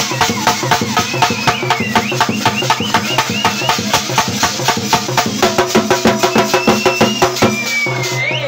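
Live folk devotional music: hand-held brass cymbals clashed in a fast, even beat, about six strokes a second, with drum over a steady low drone. High sliding melodic notes run over the top until near the end.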